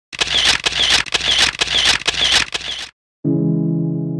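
Camera-style mechanical clicking, about two clicks a second, that stops suddenly just before three seconds in. After a brief silence a strummed guitar chord starts and rings on, slowly fading.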